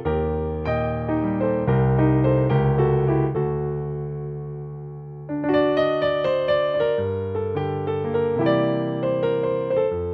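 Yamaha digital piano playing a solo flamenco-like piece: chords and melody notes, with one chord held and fading away in the middle before the playing comes back louder about five seconds in.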